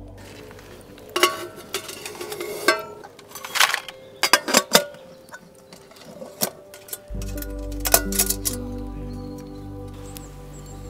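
Stainless camp cookware clinking and knocking as a baking tray and a steel pot lid are handled, about a dozen sharp clinks between one and seven seconds in. Background music with steady low tones comes in about seven seconds in.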